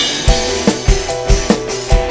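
Live dangdut band playing, with a drum kit beating a fast steady pulse, about five hits a second, under sustained melody instruments.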